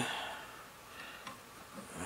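Quiet room tone with two faint clicks about a second in.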